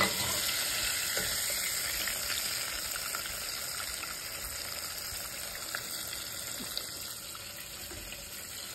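Breaded shrimp deep-frying in hot oil in a pan: a steady sizzle that slowly gets quieter, with a few light clicks.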